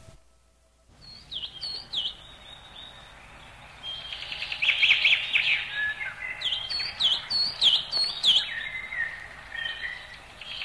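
Birds calling, starting about a second in: repeated short, high chirps that dip and rise in pitch, with a dense flurry of quick notes about five seconds in and a few thin, steady whistled notes.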